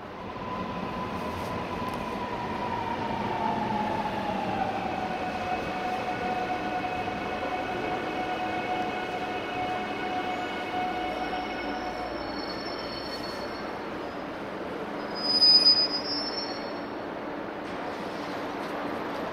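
Electric multiple-unit commuter train of Seoul Metropolitan Subway Line 1 pulling into the station: its motor whine glides down in pitch as it slows, holds steady, and dies away about twelve seconds in. A brief, loud, high squeal follows about fifteen seconds in.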